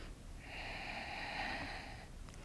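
A woman's breath, one long, faint, airy breath lasting about a second and a half, starting about half a second in.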